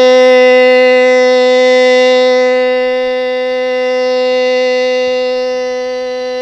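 A singing voice holding one long, loud, steady note, the drawn-out sustained tone of Hmong kwv txhiaj sung poetry.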